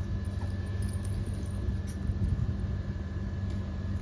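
Steady low hum of background room noise, with a faint thin high tone over it and no distinct event.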